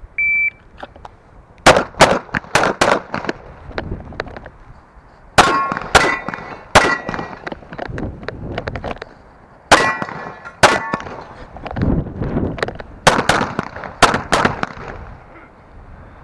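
A shot timer's short high start beep, then strings of pistol shots fired in quick pairs and groups through an IPSC stage, starting a little under two seconds later. Several shots are followed by a brief metallic ring, typical of hit steel targets.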